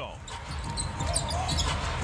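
Basketball being dribbled on a hardwood court over a steady arena crowd murmur, with short high sneaker squeaks about halfway through.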